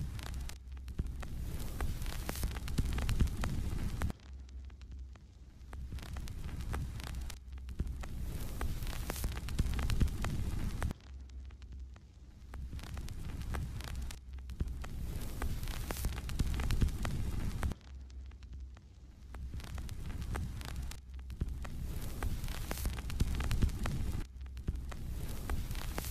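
Low, droning ambient soundtrack under a title card: a throbbing hum that swells and drops back in a regular cycle every few seconds.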